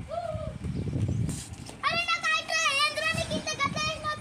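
Children's high-pitched voices calling out in long, wavering, drawn-out tones. A short low rumble comes about a second in.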